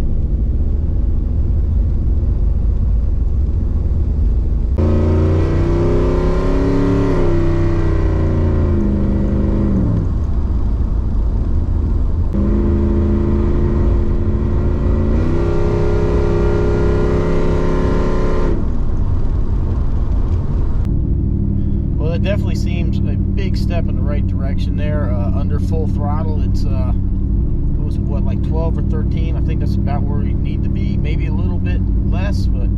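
The tuned-port-injected V8 of a third-gen Camaro Z28 heard from inside the cabin while driving. It starts as a steady low rumble, then climbs in pitch under acceleration and falls back, twice, before settling into a steady cruising drone.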